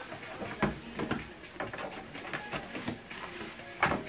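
Scanner lid of an HP Envy 6030 all-in-one printer being handled and lifted open, with a few light knocks and a louder clack near the end as it opens.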